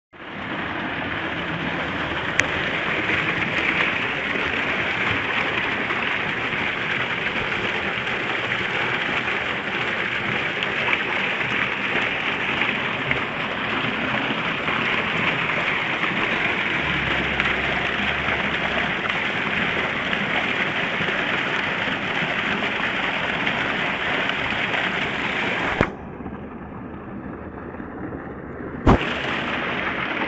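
Water from a DC solar water pump's outlet pipe gushing and splashing into a concrete tank, a loud steady rush. Near the end it drops much quieter for about three seconds, then comes back after a single sharp knock.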